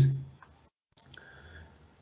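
A man's voice trails off at the end of a sentence, then a pause broken by one faint, sharp click about a second in, with the sound otherwise dropping out almost entirely.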